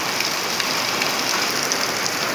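Heavy rain mixed with hail pouring down onto waterlogged ground: a steady, dense hiss with a few faint ticks scattered through it.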